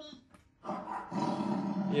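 A man imitating a tiger's roar with his voice: a rough, growling roar that starts about half a second in and lasts about a second and a half.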